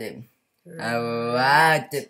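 A boy's voice sounding out a word slowly in a phonics reading exercise: a short sound, then one long voiced sound held at a steady pitch for over a second.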